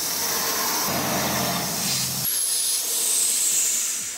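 Compressed air hissing out of the rear air suspension bag of a 2007 Mercedes GL450 through its loosened air-line fitting, letting the bag deflate before removal. The steady hiss starts suddenly, loses some of its lower rush a little past halfway, and eases off near the end.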